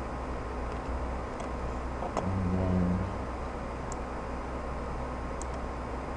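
Steady low hum of office room noise, with a short low pitched hum about two seconds in and a few faint computer keyboard clicks later on.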